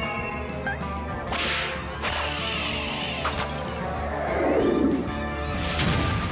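Cartoon background music with quick swish sound effects about one and a half and two seconds in, and a louder whoosh falling in pitch about four seconds in.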